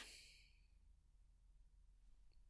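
Near silence: room tone with a faint low hum, after the last word fades in the first moment.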